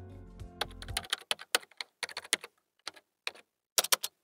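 Computer keyboard typing sound effect: a run of irregular keystroke clicks. The tail of a music bed ends about a second in.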